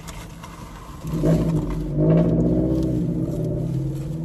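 A motor vehicle's engine running with a steady hum, swelling in level about a second in and staying loud.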